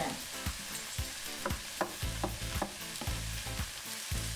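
Sliced onion, yellow bell pepper and pasilla chilies sizzling as they sauté in oil in a nonstick skillet. A wooden spatula stirs them, scraping and tapping against the pan several times.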